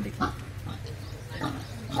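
A pause between phrases of a man's speech: a short breath or mouth noise about a quarter second in, over a steady low hum.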